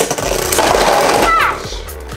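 Beyblade Burst spinning tops whirring and grinding against the plastic stadium floor and clashing, just after launch; the loud scraping drops off about one and a half seconds in as one top bursts apart.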